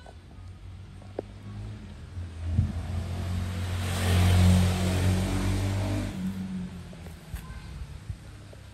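A motor vehicle passing by: its engine hum and tyre noise grow louder, peak about halfway through, then fade away.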